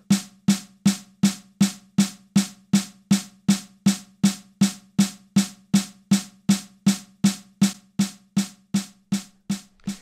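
Snare drum playing steady, evenly spaced eighth notes, about two and a half strokes a second: a repeating measure in 4/4. Each hit rings briefly. The strokes stop just before the end.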